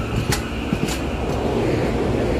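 SEPTA Silverliner IV electric commuter train passing close by, its cars rumbling steadily over the track. The wheels click sharply twice in the first second as they cross rail joints.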